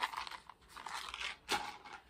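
Handling noise of small items being put back into a handbag's inner pocket: irregular rustling and crinkling against the canvas, with one sharp click about one and a half seconds in.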